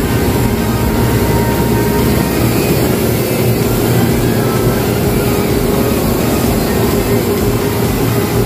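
Steady loud mechanical hum inside an airport apron passenger bus with its engine running, holding one even tone throughout.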